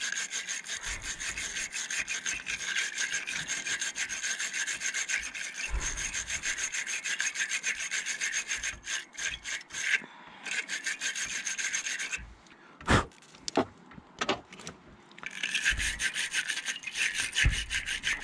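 Wire bristles of a battery-terminal cleaning brush scraping inside a battery cable clamp as it is twisted back and forth in quick strokes, cleaning corrosion off the clamp's contact surface. The scraping stops for a few seconds about two-thirds of the way through, with a few light knocks, then starts again.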